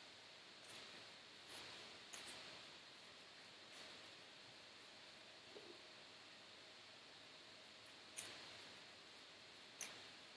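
Near silence, with a few faint, brief soft scuffs of hands and forearms shifting on a rubber gym floor mat during plank walks; the two strongest come near the end.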